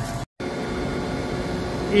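Steady machine hum from a stopped tractor-and-planter rig left running, after the sound cuts out for a moment near the start.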